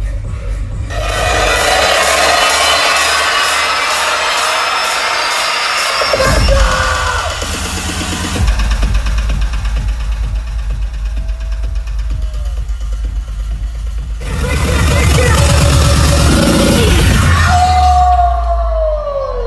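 Bass-heavy electronic dance music from a DJ set, played loud through a club sound system. It changes section several times: a new pulsing bass part comes in about eight seconds in, a dense loud passage begins near fourteen seconds, and a falling, siren-like tone sweeps down near the end.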